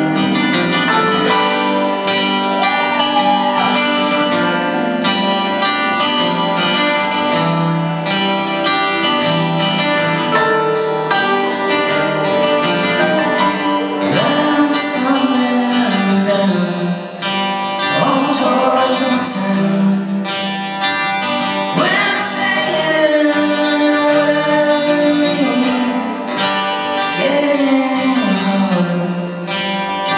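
Live folk-rock band playing a song: a lead singer over banjo, guitars and drums.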